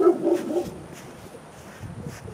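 A dog barking, a quick run of barks right at the start.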